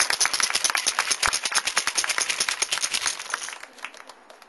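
Crowd in the stands clapping after the show's introduction, the applause thinning and dying away about three and a half seconds in.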